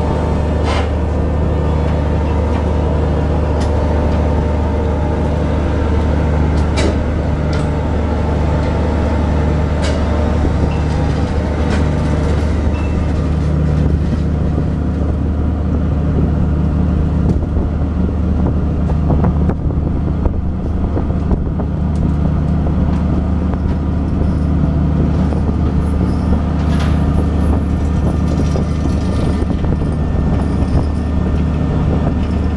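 Fishing vessel's engine and deck machinery running with a loud, steady low drone and a pulsing hum, with a few brief sharp ticks.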